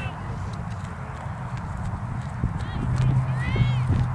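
Outdoor field sound at a soccer game: a steady low rumble on the microphone with a few light knocks, and voices calling out across the field, loudest about three seconds in.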